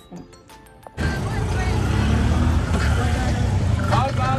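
Cabin noise inside a moving road vehicle: a loud, steady low rumble of engine and road that cuts in suddenly about a second in, under background music.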